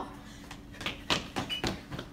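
Several quick thumps, about three a second, with a short high squeak among them: hurried footsteps on a hard floor.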